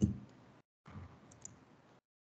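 Faint computer-mouse clicks: a short knock at the start, then two quick light clicks about a second and a half in, with the sound dropping out completely in between.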